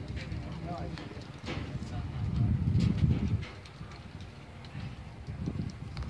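Indistinct people's voices, with a low rumble that swells and is loudest between about two and three and a half seconds in.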